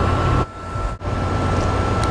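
Steady mechanical hum with hiss and a faint constant high whine, as from running machinery. It drops away briefly for about half a second a little before the middle.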